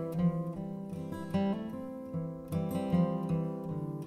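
Background music on acoustic guitar, plucked and strummed notes changing every half second or so.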